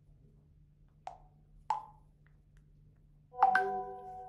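Messaging-app notification sounds: two short pitched pops about a second apart, then a louder chime of several ringing tones near the end, marking the customer's quick-reply message and the automatic reply coming in.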